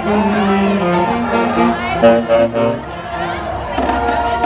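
Marching band saxophones and brass playing a tune together in a loose, informal way, with voices talking over the music. The playing drops back briefly about three seconds in, then picks up again.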